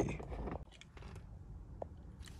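Faint handling noise from a handheld scan tool being held and moved: a short rustle at the start, then quiet with a few light clicks.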